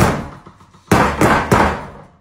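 Boxing gloves slammed down onto a tabletop: one hard knock at the start, then three quick hits about a second in, each ringing out briefly.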